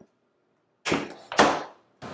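A door being pushed shut: two loud bangs about half a second apart, the second louder, each fading quickly.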